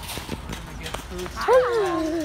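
Light footsteps on pavement, then about one and a half seconds in a drawn-out "ah" from a person's voice, sliding down in pitch.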